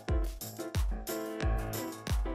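Background music with a steady beat: a deep kick drum about every 0.7 s, three times, under held keyboard chords.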